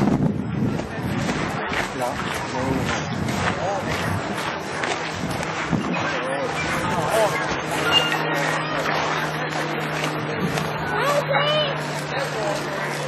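Indistinct voices of people talking in the background, with no words coming through clearly. A steady low hum sets in about halfway through.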